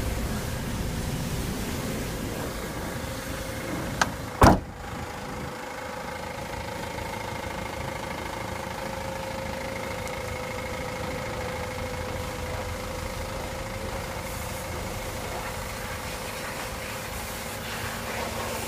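Ford Transit van's engine idling steadily. About four seconds in there is a click and then a single loud slam, the van's door being shut.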